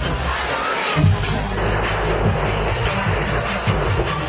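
Loud live concert music with a strong bass, and a crowd cheering over it.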